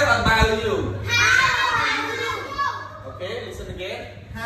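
Several children's voices talking together in a classroom, overlapping and echoing in the hard-walled room, with a steady low hum underneath.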